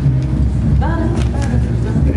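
Upright piano starting the introduction to a jazz song, over a steady low rumble and background voices.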